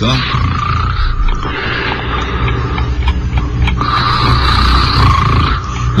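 A pig-like grunting, snoring sound effect played on a radio show. It comes loudest in two stretches: about a second at the start, and again from about four to five and a half seconds in.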